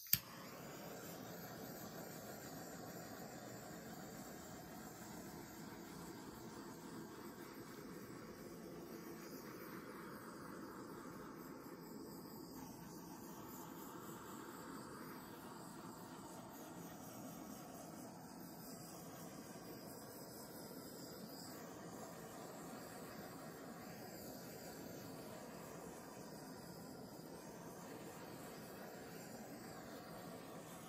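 A handheld butane torch clicks alight, then its blue flame hisses steadily as it is passed over the wet paint of a fresh acrylic pour.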